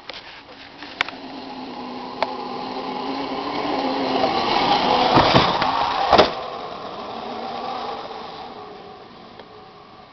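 Electric ATV's motor whining, growing louder as it comes up to the ramp and fading as it rides away. Sharp knocks about five and six seconds in, the second the loudest, as it goes over the jump ramp and lands.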